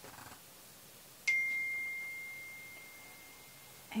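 A single clear bell-like ding about a second in: one high, pure tone that fades away slowly over about two and a half seconds.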